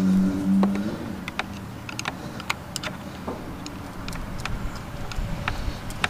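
Hands working a screw and the seat-belt buckle loose from a car seat: a dozen or so small, sharp plastic-and-metal clicks and taps, scattered irregularly. A steady buzzing hum stops about a second in.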